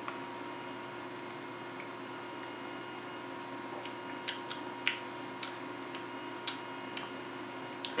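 Quiet room hum, then from about halfway through a run of soft, short clicks roughly half a second apart: lips and tongue smacking while tasting a mouthful of strong barley wine.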